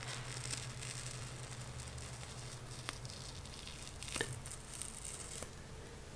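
Black peel-off clay face mask, a dried polyvinyl-alcohol film, being slowly pulled away from the skin of the nose: faint sticky peeling, with a few small ticks in the second half and a low steady hum underneath.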